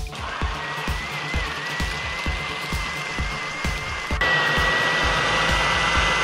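Personal bullet-style blender motor whirring steadily as it purées roasted peppers into hot sauce, pressed down by hand. About four seconds in it gets louder and fuller.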